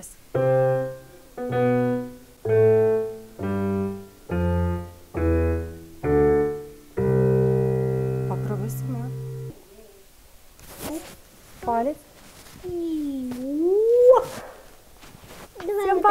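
Digital piano played in the low register: seven separate chords with the bass stepping down, then a final chord held for a couple of seconds. Then a voice slides up and down in pitch.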